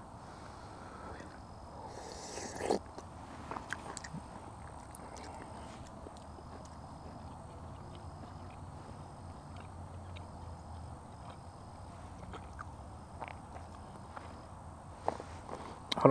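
Faint chewing and small clicks of a long titanium spoon in a freeze-dried meal pouch, with a brief crinkle of the pouch about two seconds in.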